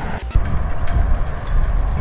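Wind buffeting the microphone: a loud, rough, fluttering low rumble with hiss, broken by a brief click about a third of a second in.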